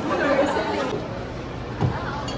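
Indistinct chatter of people in a busy shop, with a single dull thump near the end.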